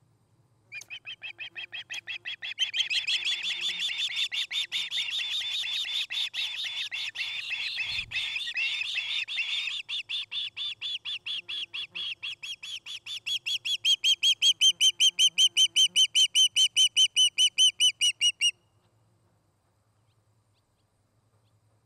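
Juvenile osprey calling: a long, rapid series of high whistled chirps, about five a second, growing louder a little past halfway and stopping suddenly near the end.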